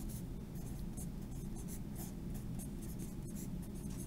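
Pen writing on lined spiral-notebook paper: a run of short, quick strokes over a low steady background hum.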